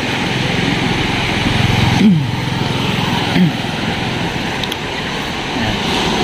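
Steady rush of surf breaking along a sandy beach, heard at ordinary loudness, with a low engine-like hum underneath and brief distant voices.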